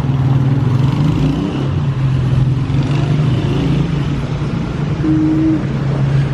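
A vehicle engine idling steadily, a low even drone that holds one pitch, with a brief higher tone about five seconds in.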